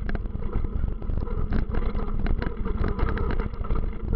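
Continuous rapid rattling and knocking over a heavy rumble, as a camera is jostled moving fast along a rough trail through brush.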